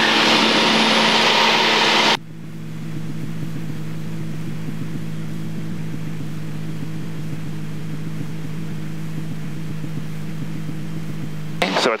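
Steady drone of the Extra 300L's engine heard over the cockpit intercom during a practice stall. For the first two seconds a loud rushing noise lies over it, then cuts off suddenly.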